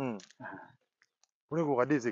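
A man speaking in short phrases, with a pause of under a second in the middle that holds only a couple of faint clicks.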